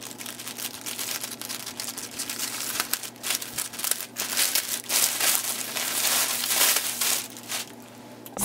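Plastic mailer bag crinkling and tearing as it is opened by hand, then the plastic wrapping inside rustling. The crinkling is busiest in the second half and falls away just before the end.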